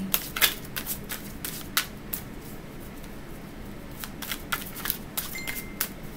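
Tarot deck being shuffled by hand: a run of quick, crisp card flicks and taps, thinning out in the middle and picking up again near the end.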